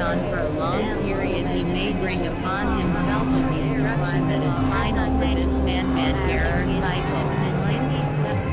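Experimental electronic noise music: low synthesizer drones that enter about a third of the way in and grow heavier near the middle, under rapid warbling pitch sweeps higher up.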